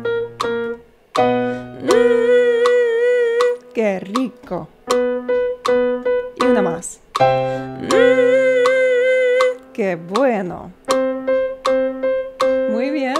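Electric keyboard playing held chords under a woman's voice doing a vibrato singing exercise. Twice she holds a hummed 'mm' note whose pitch wavers evenly in a vibrato, with short sliding sung phrases in between.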